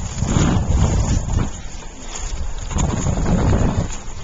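Wind buffeting the microphone of a camera carried on a moving bicycle: a low rumbling rush that swells in two long gusts, the first about a third of a second in and the second in the latter part.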